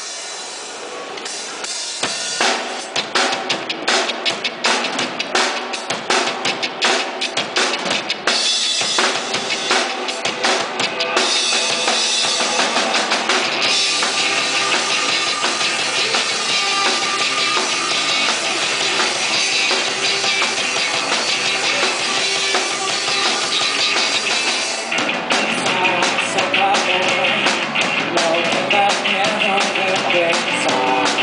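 Live rock band playing the instrumental opening of a song: a drum kit with bass drum and snare beating steadily under amplified electric guitar, acoustic-electric guitar and bass. It starts sparse and becomes denser and fuller about halfway through.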